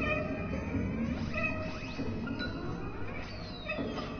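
Free improvised chamber music for flute, oboe, clarinet, two cellos and synthesizer, with several instruments sliding up and down in pitch. A high glide falls near the end.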